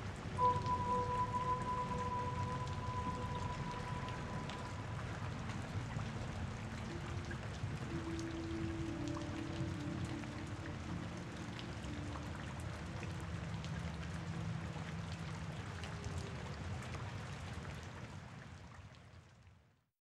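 Steady rain ambience with a few faint, held tones of background music over it, all fading out near the end.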